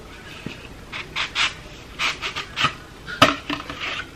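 Phone-case packaging being opened and handled: short bursts of rustling and crinkling, with one sharp click a little after three seconds in.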